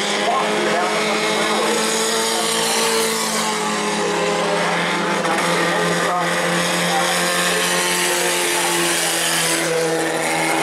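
Bomber-class stock cars racing on a short asphalt oval, several engines running hard at once, their pitch drifting up and down as the cars pass.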